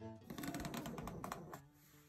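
Acrylic quilting ruler and fabric being shifted and handled on a cutting mat: a quick flurry of small clicks and rustling for about a second and a half, with soft guitar music underneath.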